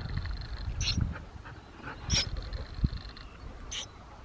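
Three short, high peeps from a hand-held nestling songbird, spaced about a second apart, over a low rumble of wind or handling on the microphone.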